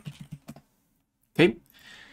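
A few quick, faint computer keyboard key clicks in the first half second, typing a class name into a code editor.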